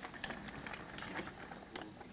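Irregular light clicks and taps of small objects being handled close by, about a dozen in quick, uneven succession.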